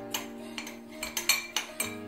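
Metal spoon stirring a coffee-and-milk paste in a glass bowl: a run of irregular clinks and scrapes against the glass. A held chord of background music plays underneath.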